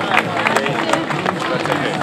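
A crowd applauding with scattered hand claps, mixed with background music and voices.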